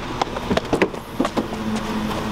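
SUV rear liftgate being unlatched and swung open: a quick string of clicks and knocks from the latch and gate, with a steady low hum starting about two-thirds of the way in.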